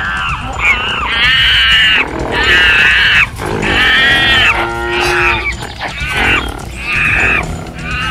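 A run of about seven loud, high-pitched squealing cries, each up to about a second long and some bending in pitch, over background music.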